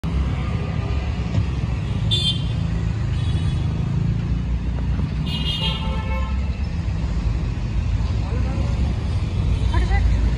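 Busy street traffic, cars and motorbikes running steadily, with a vehicle horn honking briefly about two seconds in and again around five seconds in.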